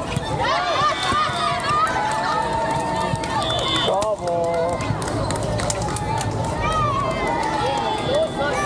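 Many overlapping voices of volleyball players and onlookers calling out and chattering during a rally on an outdoor court, with a sharp knock about halfway through as the ball is hit.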